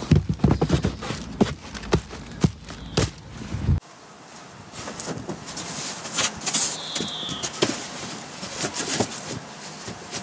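Plastic bag crinkling and sharp knocks of objects being handled in a car boot's underfloor tray. After a sudden change about four seconds in, quieter clunks and rustling follow as the boot floor panel is fitted back in place.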